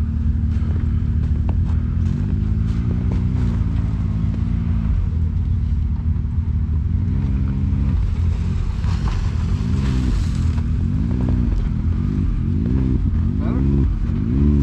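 Can-Am Maverick side-by-side engine running at idle, blipped again and again in short revs that rise and fall in pitch as the machine is edged through a tight turn, coming more often in the second half.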